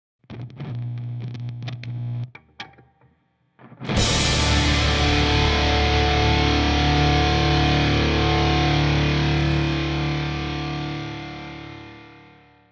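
Short distorted electric guitar sting: a brief figure and a couple of plucked notes, then about four seconds in a loud full chord struck once that rings on and slowly fades away.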